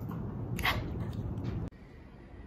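A woman's short, high vocal cry that falls in pitch, about two-thirds of a second in, over room background noise. The sound cuts off abruptly near the end, leaving a quieter background.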